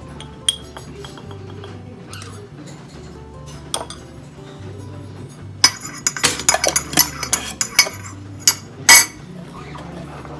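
A long metal spoon stirring in a ceramic mug, clinking quickly against the sides for about two seconds, with a few louder clinks just after. Earlier there are only a few scattered light clicks, and background music plays throughout.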